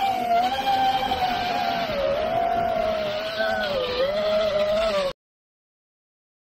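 FPV quadcopter's motors whining in flight, the pitch rising and falling with the throttle, then cutting off suddenly about five seconds in.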